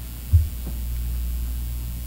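Steady low mains hum from the sound system, with a single brief low thump about a third of a second in.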